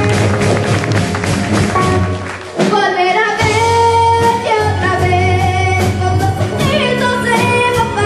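A live band playing a slow song, with electric guitar, drum kit and hand drums; a short dip about two and a half seconds in, then a female voice singing over the band.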